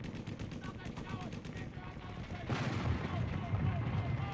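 Rapid gunfire rattling throughout. About two and a half seconds in comes a louder blast, followed by a low rumble.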